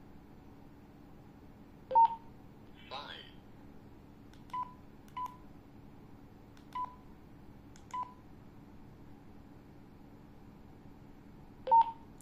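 Handheld two-way radios beeping while an XF-888S learns channels from another radio's transmissions: a loud beep about two seconds in and again near the end, with four shorter, quieter beeps of the same pitch between. A brief voice says "five" just after the first loud beep, and a faint steady hum runs underneath.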